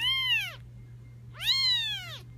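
A two-week-old kitten meowing twice: two short high calls, each rising then falling in pitch, about a second and a half apart, over a low steady hum.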